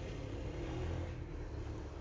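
Steady low background hum and hiss, with no distinct events.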